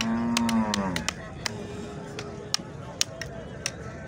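A cow moos once, low and about a second long, dropping in pitch as it ends. Repeated sharp clicks run under it: a knife paring a cow's horn.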